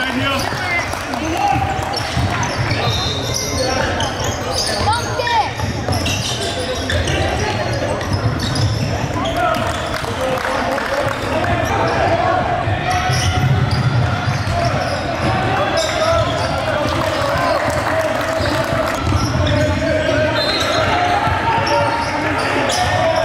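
Indoor basketball game sound in a large gym: a ball bouncing on the hardwood court among indistinct voices of players and spectators, echoing in the hall.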